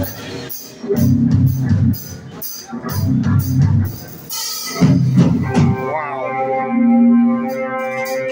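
Live rock band playing loud: three heavy, drawn-out chord blasts with the drum kit, about two seconds apart, then from about six seconds in a held guitar note ringing on steadily.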